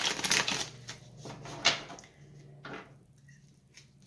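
Tarot cards being shuffled by hand: a quick patter of card flicks in the first second, a sharp snap near the middle and another about a second later, then it quietens.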